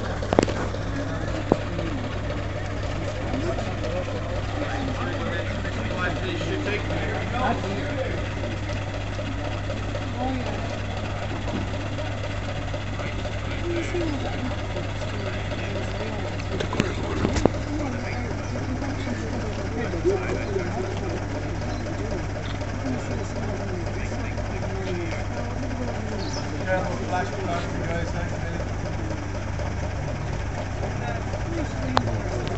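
A motor vehicle engine idling steadily, under the chatter of people talking, with a few brief clicks.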